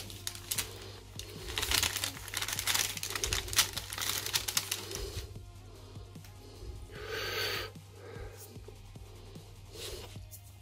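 Baking paper crinkling and crackling as gloved hands unfold it and peel a freshly hot-pressed carbon sheet off it, busiest over the first five seconds, with a steady low hum underneath.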